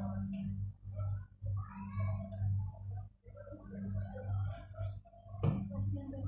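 Indistinct conversation among people at a dinner table, over a steady low hum, with one sharp click about five and a half seconds in.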